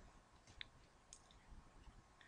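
Near silence with a few faint clicks: one sharper click about half a second in, then a few fainter ones.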